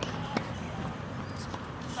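Tennis ball being struck and bouncing on a hard court: two sharp knocks about a third of a second apart, the second the louder.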